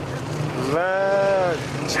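Speech only: a voice holding one long drawn-out hesitation vowel, 'va' ('and'), in Persian, over a steady low background hum.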